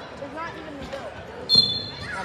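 A thump on the mat, then a referee's whistle blowing steadily for about half a second, signalling a pin. Faint voices sound underneath.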